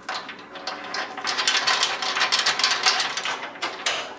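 Hand ratchet clicking rapidly as the crimp nuts on the lower control arm pivot bolts are run down snug.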